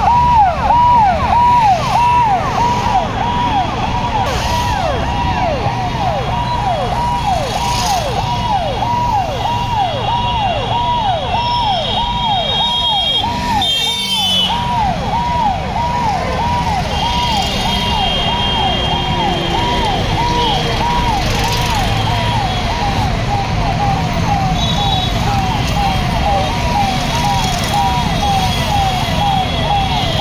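Police vehicle siren sounding continuously, a quick repeating downward sweep at nearly two a second, over a steady low rumble of engines and traffic.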